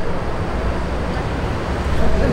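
Steady city street traffic noise: a low rumble of cars with an even hiss over it.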